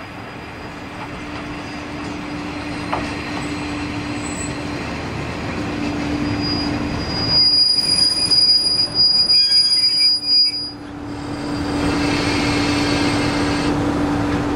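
KiHa 28 and KiHa 52 JNR-type diesel railcars pulling in to stop: the diesel engines' drone grows louder as they approach. A little past the middle comes a high brake squeal for about three seconds as they slow to a halt, and the engines then run on steadily at a standstill near the end.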